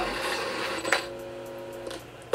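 Steady airplane-cabin noise from the vlog, then a click about a second in and a short ringing tone of several pitches held for just under a second, cut off abruptly as the vlog ends.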